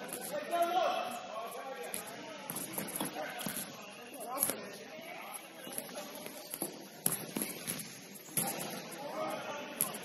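Indistinct shouts and calls from futsal players in a large gym hall, with a few sharp knocks of the ball being kicked and struck across the court.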